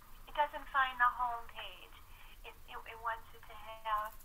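A person speaking over a conference-call line, quieter than the main speakers, the voice thin and narrow as through a phone connection.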